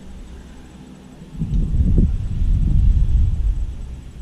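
A gust of wind buffeting the camera's microphone: a deep, loud rumble that swells up about a second in and dies away near the end.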